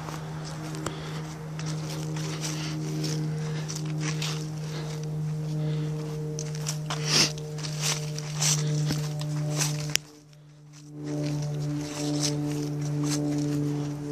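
A vehicle running with a steady, low-pitched hum as it drives slowly away, with scattered clicks and knocks. The sound drops out briefly about ten seconds in.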